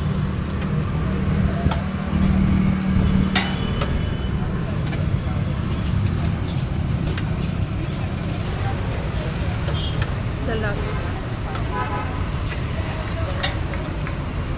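Outdoor street ambience: a steady low rumble of road traffic, with a few sharp clicks and faint voices in the background.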